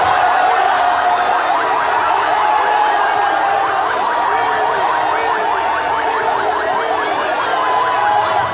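A siren sounds in fast, repeated pitch sweeps over a steady high tone that dips a little and rises again near the end.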